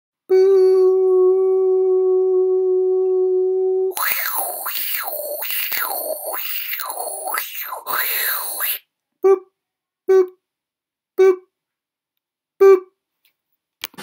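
TV test-pattern sound effect: a steady beep held for about three and a half seconds, then a hissy, wobbling sweep rising and falling several times for about five seconds, then four short beeps at the same pitch as the first, and a click near the end.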